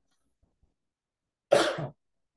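A man's short cough about one and a half seconds in, after a silent pause.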